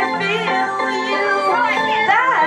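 Live band music with a lead vocal singing in swooping, wavering lines over steady held chords.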